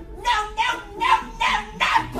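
A woman's voice shrieking a string of shrill, high-pitched yells, about two or three a second, with no clear words.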